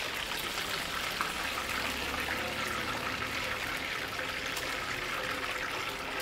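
Deep-frying oil in a wok sizzling steadily, a continuous even hiss, just after a batch of marinated chicken pieces has been fried half-done.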